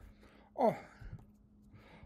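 A man's short voiced 'oh', falling in pitch, made in passing while signing, as deaf signers often voice; a soft low thump follows about half a second later. A faint steady hum runs underneath.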